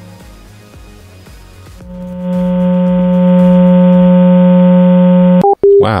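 A telephone call answered by a line that gives only a loud, steady electrical buzz, heard over the phone connection: faint line noise first, then the buzz swells in and holds for about three and a half seconds before cutting off, followed by two short beeps, the second lower. The caller suspects the line is connected to a guitar amplifier.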